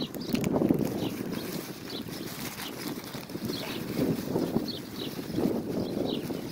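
Gusty wind buffeting a phone's microphone: an uneven low rumble that swells and fades with the gusts.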